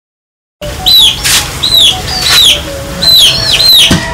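Birds chirping: a quick series of high, downward-sliding chirps, about two a second, starting suddenly after a moment of silence.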